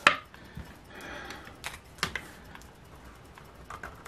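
A coin scratcher scraping and tapping on the coated face of a scratch-off lottery ticket lying on a wooden table: a short scratchy stroke and a few light clicks.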